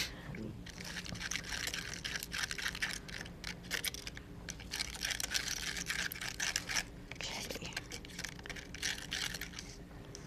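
Stirring a gritty mixture of paint, iron filings and linseed oil in a petri dish: quick, irregular scraping and crunching as the tool works the mix against the dish, as she tries to get a good consistency.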